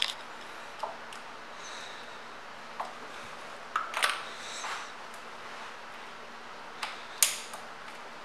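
A few light clicks and taps from a hand working the ignition key and switches of a 1982 Kawasaki KZ1100, over quiet room tone with the engine not yet running; the sharpest click comes about seven seconds in.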